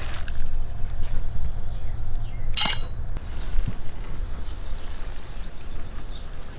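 Metal rack-mount hardware giving one short ringing clink about two and a half seconds in, over a steady low rumble.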